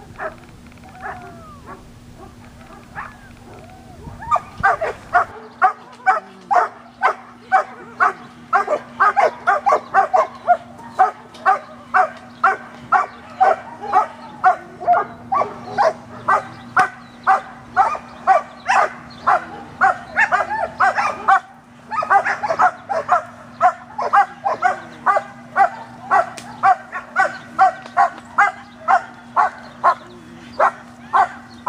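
German Shepherd barking at the protection helper in a steady, rhythmic string of about two to three barks a second. The barking starts a few seconds in and keeps going, with one short break past the middle.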